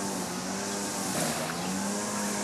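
A steady, even motor hum with a high hiss over it.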